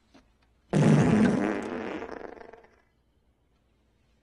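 A long fart sound effect that starts suddenly about a second in and fades out over about two seconds.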